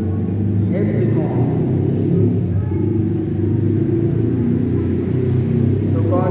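A man's voice speaking low and indistinctly into a handheld microphone over a heavy, steady low rumble.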